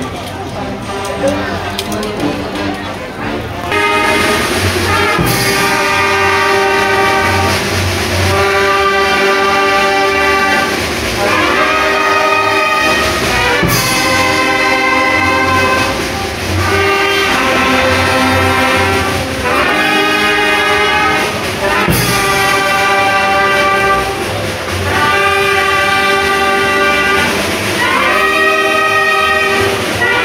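Crowd chatter at first; then, about four seconds in, a brass band starts playing a tune of long held chords over a pulsing bass line, repeating the same phrase again and again.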